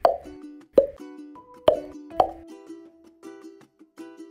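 Light plucked-string intro jingle with cartoon pop sound effects: four sharp pops over the first two and a half seconds, the melody running on underneath.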